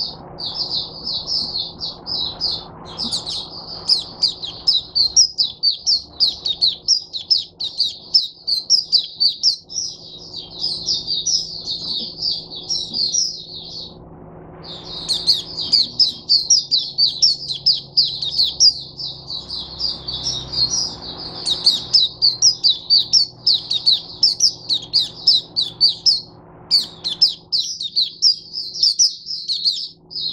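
White-eye (mata puteh) singing a long, rapid, high-pitched warbling song in near-continuous phrases, with short breaks about 14 seconds in and again near 27 seconds. A faint steady hum lies underneath.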